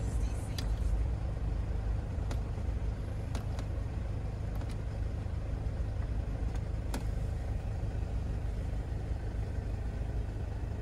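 Mercedes-Benz A180 idling, heard as a steady low rumble inside the cabin, with a few light clicks from the dashboard controls.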